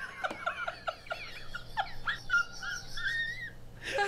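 A man laughing helplessly: a quick run of short laughs, then high-pitched squeaky, breathy laughter.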